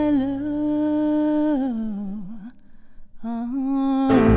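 A single voice humming long, wordless held notes with vibrato. The notes slide down in pitch, break off briefly just past the middle, then one more note is held, with little or no accompaniment behind it.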